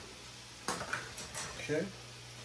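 A small plastic food container of chopped onions handled at the stove: one sharp click a little under a second in, then a few lighter clicks and clatters, over a steady low hum.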